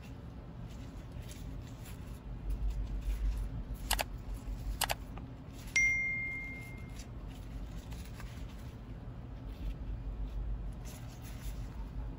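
Subscribe-button sound effect: two sharp clicks about a second apart, then a bright bell ding that rings out and fades over about a second. Faint rustling of ribbon being handled runs underneath.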